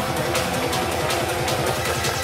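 Fast electronic club music mixed by a DJ, with a hard, steady beat at about 160 beats per minute.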